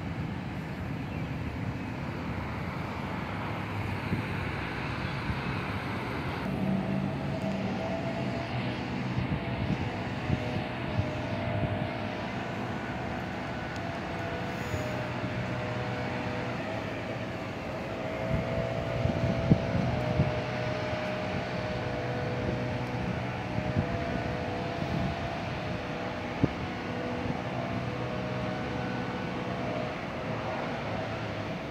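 Distant diesel freight locomotives approaching: a steady low rumble, with faint held tones, several together, coming in about a quarter of the way through and running on with a short break.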